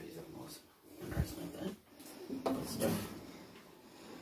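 A person's voice, low and indistinct, with a dull thump about a second in.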